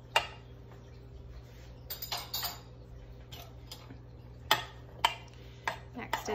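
A metal spoon stirring cornstarch paint in a metal muffin tin, clinking against the sides of the cup now and then. There is one sharp clink just after the start, a few around two seconds in, and three more spaced through the last couple of seconds, with soft stirring between them.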